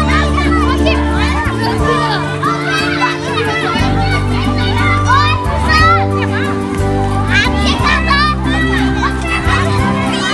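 Many children's voices chattering and calling out while playing, over background music with steady held bass notes that change every second or two.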